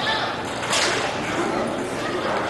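Roller hockey play on a rink: one sharp hit about three-quarters of a second in, over general rink noise and distant voices.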